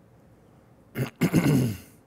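A man coughing: a short cough about a second in, then a longer one.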